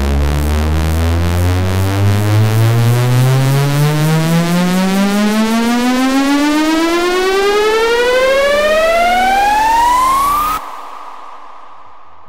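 Progressive psytrance build-up: a synthesizer riser sweeps steadily upward in pitch for about ten seconds. It cuts off suddenly near the end, leaving a much quieter passage.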